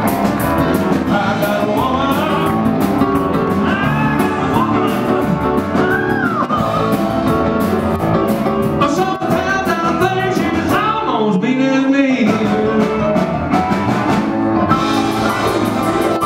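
Live rock and roll band: a singer over guitar and drum kit.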